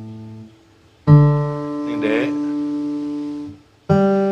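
Open strings of an acoustic guitar plucked one at a time as reference notes for tuning. The A string is damped about half a second in. The D string is plucked about a second in and rings until it is stopped near the end, then the G string is plucked just before the end.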